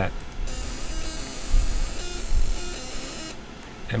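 Laser marking machine etching text into a metal plate: a hissing buzz with several steady high tones in it, starting about half a second in and cutting off just after three seconds.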